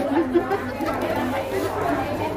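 Indistinct chatter of several overlapping voices in a crowded restaurant dining room.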